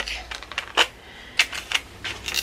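Hard plastic clicking and tapping, about five sharp taps spread unevenly: a clear plastic magnetic nail-tip display stand and its plastic packaging tray being handled and knocked together.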